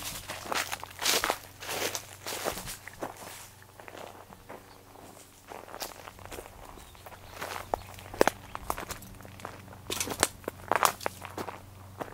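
Footsteps of a person walking over dry leaves and wood-chip mulch: uneven steps with sharp crackles, some much louder than others.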